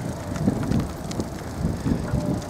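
Wind buffeting the microphone: an uneven low rumble, with a few faint clicks.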